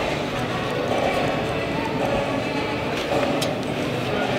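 Indoor arena background of indistinct voices and music, with the hoofbeats of a loping reining horse on the dirt floor.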